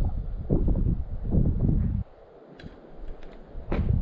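Wind buffeting the microphone in low rumbling gusts that drop away suddenly about halfway through, leaving a quiet stretch with a few faint ticks.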